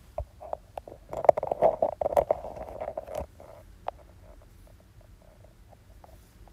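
Rustling and clicking close to the microphone, densest from about one to three seconds in, then a few faint scattered clicks.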